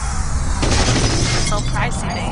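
Logo-intro sound effects over heavy bass: a sudden shattering crash just over half a second in, then a few quick sweeping tones.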